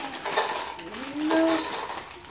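Doritos tortilla chips tipped out of snack bags into a stainless steel mixing bowl, clattering against the metal in a run of short clicks, with a child's voice briefly near the middle.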